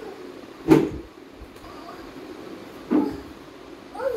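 A red plastic chair knocking and scraping on a hard stone floor as a toddler moves it. There are two short sharp bumps, about two seconds apart: the first about a second in, the second near three seconds.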